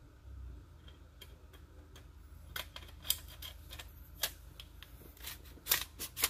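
Metal-on-metal clicks and clacks of a Remington Model 11-48 shotgun's barrel being slid back onto the magazine tube over the new recoil spring and friction ring. A few scattered clicks at first, then a quicker run of sharp clicks in the second half.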